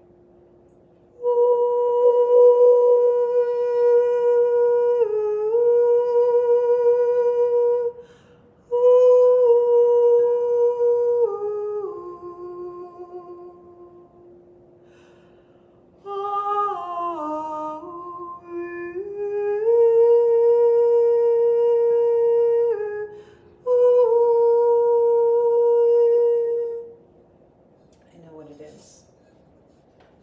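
A woman humming long held notes in four phrases that step up and down in pitch, over the steady ringing tone of a white crystal singing bowl tuned as a heart chakra bowl.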